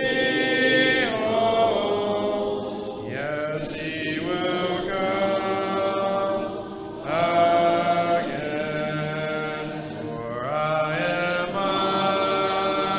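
Congregation singing a hymn a cappella in parts, with long held notes. The singing eases off briefly a little past the middle, then comes back in on the next phrase.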